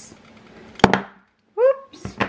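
A clear acrylic stamp block pressed down onto card stock on the tabletop, a single sharp knock a little before halfway. Near the end comes a short voiced hum.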